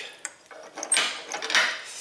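An RCBS UniFlow powder measure and its metal pan being handled as a thrown charge of smokeless powder is returned to the measure: a few light clicks, then a rustling, hissing pour lasting about a second.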